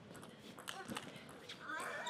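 A table tennis ball clicking off the bats and the table in a fast rally, a quick run of sharp ticks.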